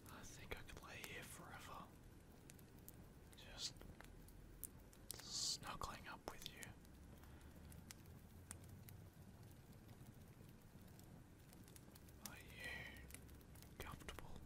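One person breathing softly and close to the microphone: four breaths several seconds apart, over a faint steady hiss.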